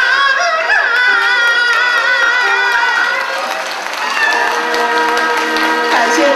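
A woman singing into a microphone in Peking opera style over backing music, her voice wavering widely and sliding between notes. Her singing ends about three seconds in, and applause starts near four seconds while the accompaniment lingers.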